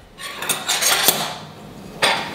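Metal knife and fork clinking and scraping as they are picked up from the countertop and brought to a plate, with a few sharp clinks in the first second before it quietens.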